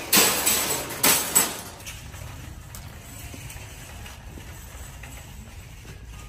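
Metal wire shopping cart pulled out of a nested row, clattering loudly for about a second and a half, then rolling along with a quieter, steady rattle of its wheels and basket.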